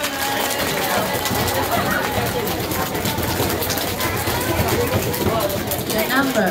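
Audience drum roll: many people drumming rapidly with their hands in a dense, steady rattle, with voices calling out over it.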